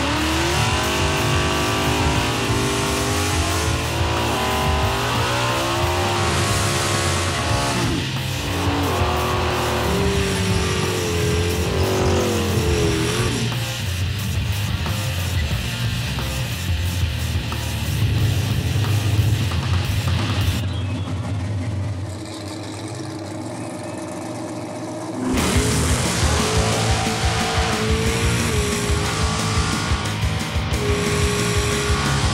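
Small-block V8 drag cars, a nitrous Chevy Vega and a nitrous Mercury Capri, revving hard through their burnouts, with tires squealing, under rock music. The sound goes muffled and quieter for a few seconds a little past twenty seconds in, then comes back loud.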